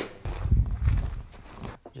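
A hand slap from a high five right at the start, followed by about a second and a half of low, irregular rumbling and thumping, with a few sharp clicks near the end.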